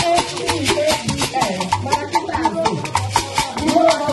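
Live Igbo traditional music: shakers keep up a fast, steady rattling beat over low drum strokes, with voices singing a melody.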